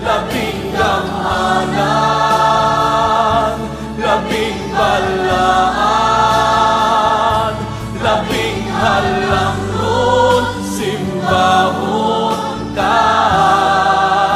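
Christian worship song in Visayan, with voices singing held phrases of about two seconds each over steady instrumental accompaniment.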